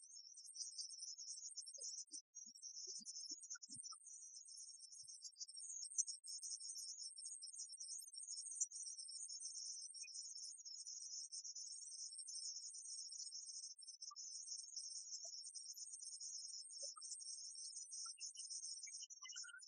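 A faint, steady high-pitched whine with a fluttering, chirring texture and no music: noise on an old cassette concert recording.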